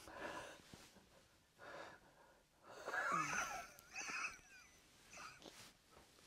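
A man's quiet, breathy, stifled laughter: short puffs of breath, then a louder squeaky giggle in the middle.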